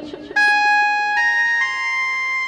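Harmonium comes in about a third of a second in and plays three held notes, each a step higher than the last.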